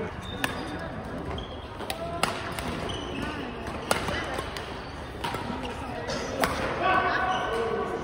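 Badminton rackets hitting a shuttlecock during a rally: sharp hits about every one to two seconds, in a large gym hall, with people talking in the background.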